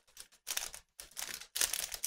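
Foil wrapper of a Panini Absolute Football trading-card pack crinkling and tearing as it is opened by hand, in several short crackly bursts.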